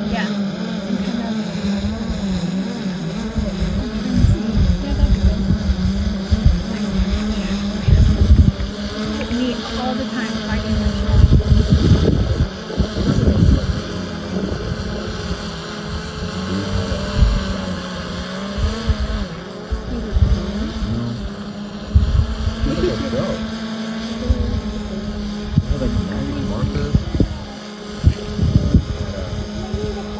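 DJI Phantom 4 Pro quadcopter drone hovering, its propellers giving a steady, slightly wavering hum, with wind gusting on the phone microphone.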